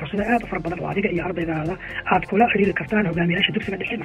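Speech: a narrator talking in Somali.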